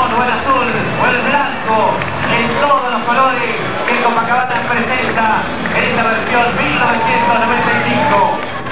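A voice talking without pause, its words unclear, over a steady low background din.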